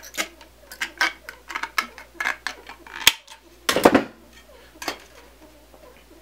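Tin snips cutting thin sheet-metal roof flashing: a run of short, sharp metallic snips and clicks, with the loudest cluster about four seconds in.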